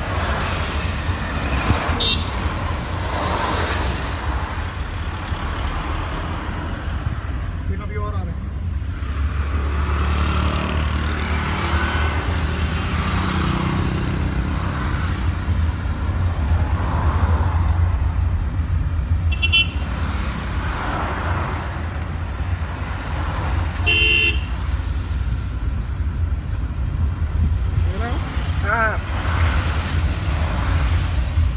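Steady road and engine rumble heard from inside a moving car, with passing traffic. Short vehicle horn toots sound twice, about two-thirds of the way through.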